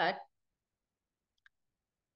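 A woman's spoken word trailing off, then dead silence broken by a single faint click about one and a half seconds in.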